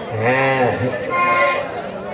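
A man's voice through the stage loudspeakers gives one long, drawn-out call that rises and falls, followed by a shorter, higher held note.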